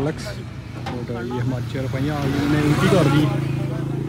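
Men's voices talking in the background, over a steady low engine hum.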